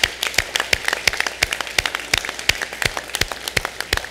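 Applause from a room full of people, with sharp single claps close to the microphone standing out a few times a second.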